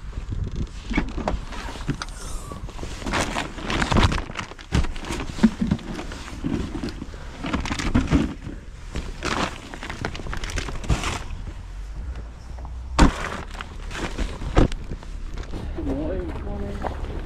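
Hatchback boot of a Volkswagen Golf being opened and items shuffled and rustled about inside among plastic bags and a tarp, a string of irregular knocks and rustles. A single sharp knock comes about three quarters of the way through, as the boot lid is shut, over a low rumble of wind on the microphone.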